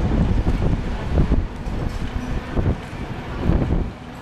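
Wind buffeting the microphone in uneven low gusts, loudest about a second in and again near the end, over the distant running of two-stroke racing kart engines.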